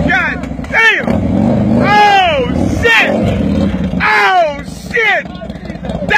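Men shouting and hollering in about six loud, rising-and-falling yells, over the low steady hum of an idling motorcycle engine.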